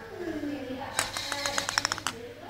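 A voice sliding down in pitch, then about a second of rapid sharp clatter, roughly ten hits a second, that stops abruptly.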